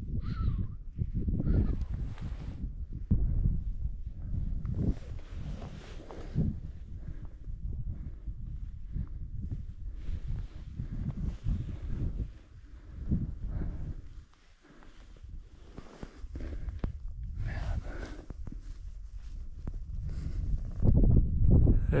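Wind buffeting the microphone in uneven gusts, with a short lull about two-thirds of the way through.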